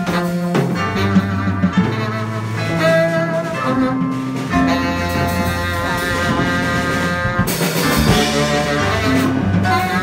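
Live band playing an instrumental jazz-rock passage: electric guitar over a drum kit, with a low bass line and long held notes above it.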